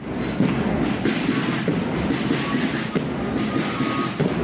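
Steady, rough noise of a marching street procession: feet on the road, with crowd and traffic noise around it.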